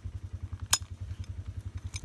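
Side-by-side UTV engine idling with an even, rapid low putter of about a dozen pulses a second. About three quarters of a second in, a single sharp click as a seat-belt buckle latches.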